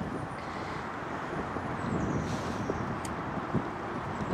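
Steady outdoor background rumble with wind on the microphone, a faint high chirp about two seconds in, and a single light click near the end.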